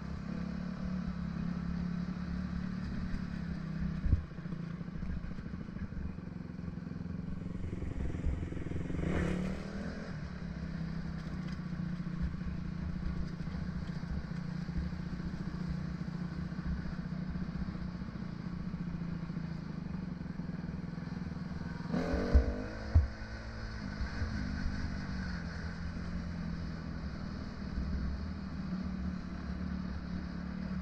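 Dirt bike engine running at a steady, moderate throttle, heard from on board while riding along a sandy trail, with small shifts in pitch as the throttle changes. Sharp knocks come from the bike and track once about four seconds in and twice a little after twenty-two seconds in.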